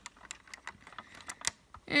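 Lego plastic clicking and tapping as a minifigure is pressed back onto its seat in the plane's cabin: a scatter of small light clicks, with one sharper click about one and a half seconds in.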